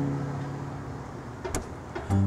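Acoustic guitar chord fading out under a steady hiss of passing road traffic, with one sharp click about one and a half seconds in.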